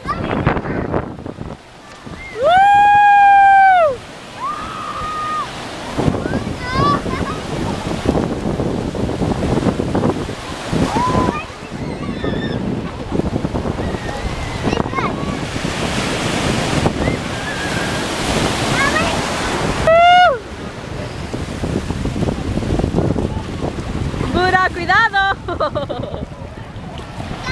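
Ocean surf washing in the shallows, with wind on the microphone. A long, loud high-pitched shout about three seconds in, a shorter one about twenty seconds in, and scattered voices of people playing in the water.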